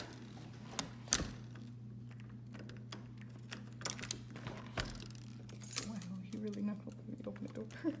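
Keys jangling on a key ring and clicking in a front-door lock as the deadbolt and knob lock are worked, with a series of sharp clicks and knocks that come thicker in the second half, under a steady low hum.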